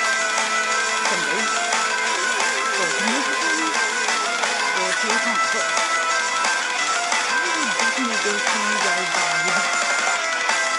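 Visual kei rock song playing from a music video: a full band mix with electric guitar, running steadily throughout.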